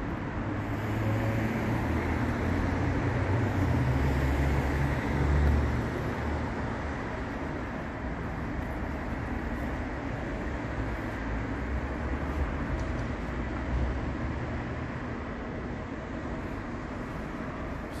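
Steady street traffic noise, with a heavy vehicle's low rumble swelling and fading in the first six seconds, loudest about five seconds in.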